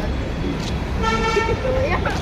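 A horn sounds once about a second in, a single steady tone lasting under a second, over a low background rumble.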